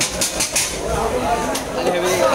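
Background chatter of several people talking, with a few sharp clicks.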